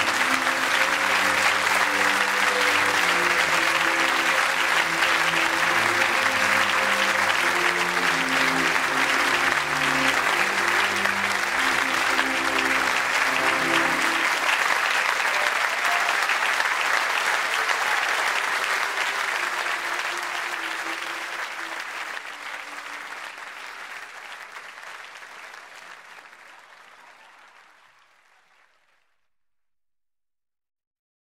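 Audience applauding at the end of a live song while the accompaniment plays closing chords. The music stops about halfway through, and the applause then fades out gradually to silence.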